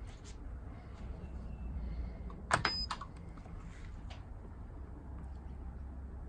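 kWeld spot welder firing a pulse through a glass fuse's wire lead onto an 18650 cell terminal: one sharp snap about two and a half seconds in, with a brief high ringing and a smaller click just after. A steady low hum runs underneath.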